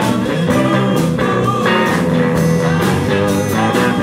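Live blues band playing: electric lead guitar and acoustic guitar over bass and drums, with a steady beat.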